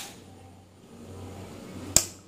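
A rocker switch on a high-tension power supply clicks once, sharply, near the end. A smaller click comes at the start, over a faint steady hum.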